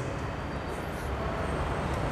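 Steady background room noise in a pause between speech: a low, even rumble with hiss above it, and no distinct events.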